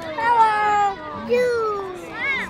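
High-pitched human voices making two long, wordless calls, each falling slowly in pitch, the second lower than the first.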